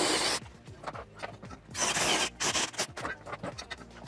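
Cordless drill driving a pipe-chamfering cutter against the end of a 110 mm plastic soil pipe, shaving the plastic in three short bursts of cutting noise: one at the start, then two close together about two seconds in.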